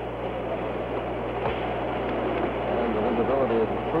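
Steady hiss-like broadcast background noise with a low hum under it, and faint voices coming up in the background near the end.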